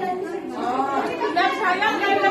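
Speech only: women chattering, voices overlapping.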